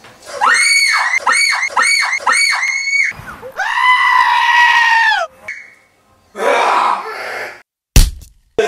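Screaming-goat meme clip: an animal yelling in a human-like scream, five quick calls in a row, then one long held scream. A harsh, noisy burst follows near the end.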